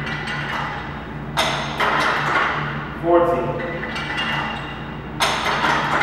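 Cable machine weight stacks clinking and knocking as the plates lift and settle during cable crossover reps: two sharp metallic hits about four seconds apart, one early and one near the end. A rep count is spoken between them.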